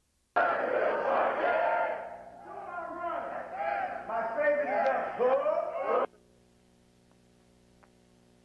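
A group of men shouting and yelling together, loud and overlapping, starting abruptly just after the start and cutting off suddenly about six seconds in. A faint steady hum follows.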